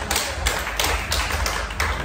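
Rhythmic tapping, a quick even run of sharp strikes at about four a second over a low rumble.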